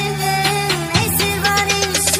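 Background music: a wavering melody over held low notes, with a beat about twice a second; the low note shifts to a new pitch about a second in.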